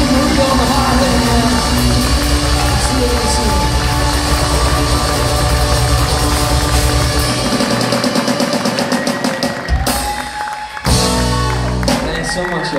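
Rock band with drum kit and guitars playing live. The music builds over the last seconds, breaks off for a moment about ten seconds in, then comes back with one final loud hit that rings on.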